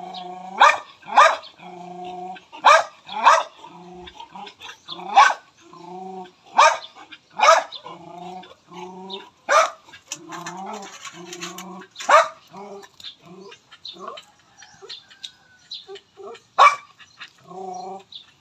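Dogs barking and yipping in play, about ten sharp barks spaced irregularly, with lower, drawn-out vocal sounds between them.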